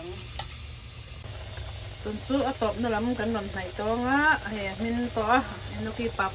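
Pot of broth boiling on a gas stove, a steady bubbling hiss; a voice speaks over it from about two seconds in.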